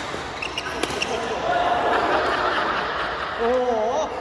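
A few sharp badminton racket hits on a shuttlecock in the first second, then players' voices and a wavering drawn-out vocal call near the end.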